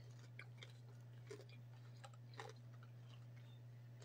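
Faint mouth sounds of someone chewing a sauced chicken nugget: scattered soft clicks and small crunches. A low steady hum runs underneath.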